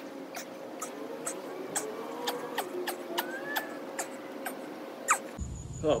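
Fast-forwarded sound of a man doing non-stop push-ups. A short sharp click comes about twice a second, in time with the reps, with high, squeaky, sped-up breathing between the clicks and a faint steady hum under it. It cuts off shortly before the end.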